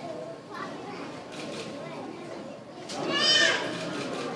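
Children's voices murmuring in the audience, with one child's loud, high-pitched squeal about three seconds in.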